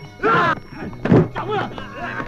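A man's screaming shout, then a heavy thud with another cry about a second in, over background music from the film's soundtrack.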